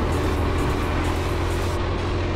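Go-kart engines running steadily as karts drive around a track, with background music over them.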